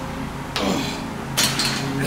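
Pec deck weight machine clanking twice during a rep: two sharp metallic knocks, about half a second in and again about a second later, over a steady low hum.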